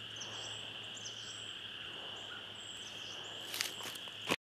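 Outdoor rural ambience: a steady high-pitched chirring chorus with short, high bird chirps scattered through it. Near the end there is a brief clatter of handling noise.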